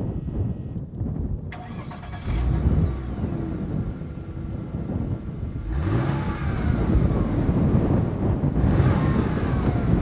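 A 1999 Mercedes CLK 320's 3.2-litre V6, heard at the exhaust, starts up about two seconds in and settles to idle, then is revved twice, the pitch rising and falling each time.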